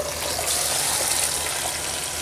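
Wet yogurt-and-tomato chicken marinade sizzling as it goes into hot oil with fried onions: a steady, loud hiss that swells about half a second in.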